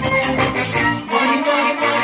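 Live band playing an up-tempo world-music number: trumpets and trombone with violin over drum kit and percussion keeping a quick, steady beat.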